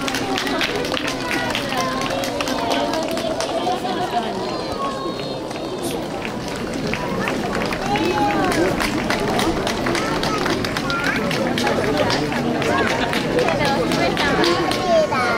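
Many voices talking at once in an outdoor street crowd, with no single voice standing out, over frequent short clicks and footfalls of people walking past close by.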